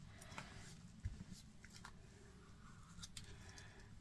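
Near silence: faint room tone with a low hum and a few faint ticks.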